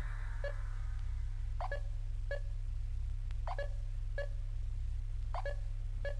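Stripped-down techno passage: a sustained deep bass hum under a throbbing low pulse, with sparse short clicky blips dotted over it.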